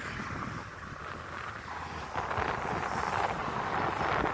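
Street traffic: a vehicle passing on the road, its tyre and engine noise swelling about two seconds in, with some wind on the microphone.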